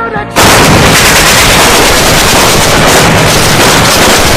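Music cuts off and loud, rapid, unbroken gunfire starts about a third of a second in and keeps going.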